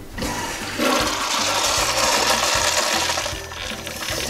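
Commercial urinal's flush valve flushing: a rush of water that builds just after the handle is pressed, runs strongly and eases off near the end. The bowl drains properly on a single flush instead of flooding, as it used to before the PeePod was fitted.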